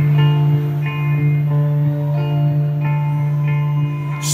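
Live rock band playing a quiet song intro: an electric guitar picking single notes, several a second, over a steady held low note, with no drums.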